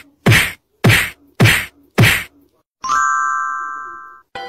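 Edited soundtrack sound effects: four sharp percussive hits about every 0.6 s, each with a low thud that drops in pitch, then a bright chime chord about three seconds in that rings on and slowly fades.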